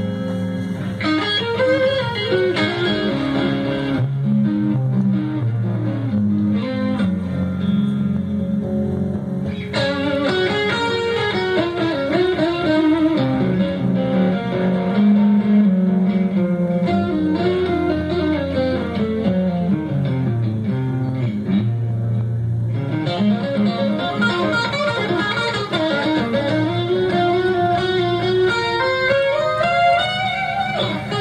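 Electric guitar and electric bass guitar jamming together: quick melodic runs that climb and fall over a steady bass line.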